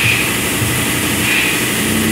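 Steady, loud mechanical rumble from running machinery.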